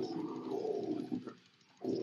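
Deep guttural death-metal growl vocals: one growled phrase that breaks off about a second and a half in, then starts again just before the end.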